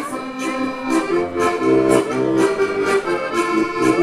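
A heligónka, the Slovak diatonic button accordion, playing a lively folk tune without singing: a held-note melody over a pulsing bass and chords, with a crisp high beat about twice a second.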